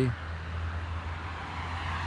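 Steady low background rumble with a faint hiss above it.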